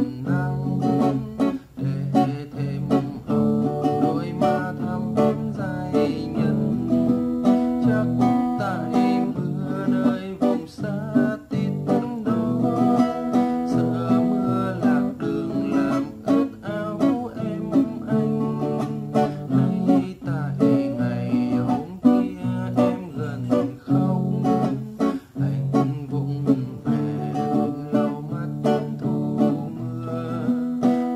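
Acoustic guitar strummed in a bolero rhythm through the chorus, chords changing every few seconds.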